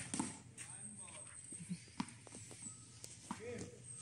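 Tennis ball being hit with rackets and bouncing on a hard court during a rally: a few sharp knocks, the loudest about two seconds in.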